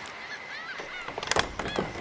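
A few short honking, squeaky calls, then a quick series of knocks on a heavy wooden door a little past halfway.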